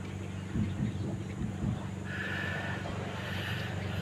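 A steady low hum with a faint, drawn-out animal call about halfway through, lasting about a second and a half.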